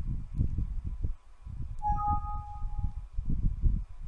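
Windows alert chime as a PowerPoint warning dialog pops up: two short electronic notes about two seconds in, a lower one then a higher one, fading within a second. Low muffled rumbling runs underneath.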